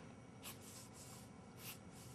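Faint strokes of a pen drawing lines on paper: two short scratches, about half a second in and near the end, over a steady low hum.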